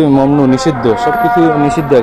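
A man calling out in long, drawn-out sing-song phrases, a street vendor hawking his wares. The pitch bends up and down from note to note.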